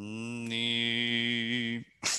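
A man's voice singing one long, steady note of Byzantine chant, held for nearly two seconds before it stops.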